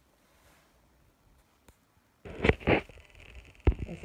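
Faux fur coat fabric rustling close to the microphone: a quiet first half, then two loud rubbing rustles about halfway through and a single sharp click near the end.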